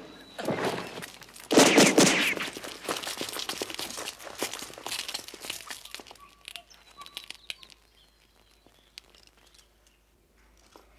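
Loud bursts of gunfire in the first two and a half seconds, followed by rapid scattered shots that thin out and fade over the next few seconds, with a few faint bird chirps near the end.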